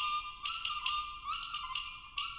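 Banhu (Chinese coconut-shell fiddle) playing a fast, bright melody of short bowed notes stepping up and down in its high register, with a brief lull near the end.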